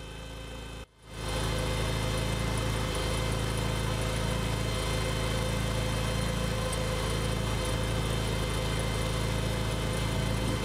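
Engine running steadily at idle, a constant hum; the sound cuts out briefly about a second in and comes back a little louder.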